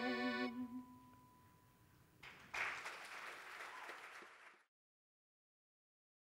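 The final held chord of a stage-musical number, its notes wavering with vibrato, ends within the first second and a faint tone lingers. Audience applause starts about two seconds in and cuts off suddenly a couple of seconds later, leaving silence.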